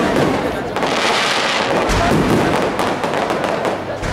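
Fireworks display: aerial shells bursting overhead in a dense run of booms and rapid crackles, with a hissing crackle swelling about a second in.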